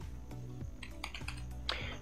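Typing on a computer keyboard: a handful of irregular key clicks as a word is typed, over quiet background music.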